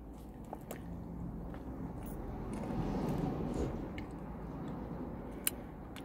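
A person biting into and chewing a mouthful of ice cream cone (lemon and strawberry ice cream in a crisp wafer cone), the mouth sounds swelling about halfway through, with a few small clicks.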